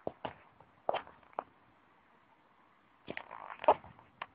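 Handheld camera handling noise: a few short, sharp clicks and knocks, scattered near the start and about a second in, then a denser cluster near the end.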